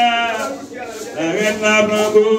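A man singing long held notes, the first note ending about half a second in and the next sung phrase starting about a second and a half in.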